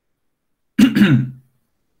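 A man clearing his throat once, briefly, about a second in.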